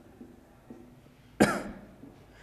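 A man's single sharp cough about one and a half seconds in, against quiet room tone.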